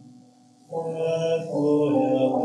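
A man singing solo in long, held notes. After a short breath pause in the first half second, a new phrase starts on a sustained note.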